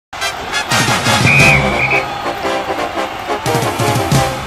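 Music with a full, dense band sound; a high held note comes in for under a second about a second in.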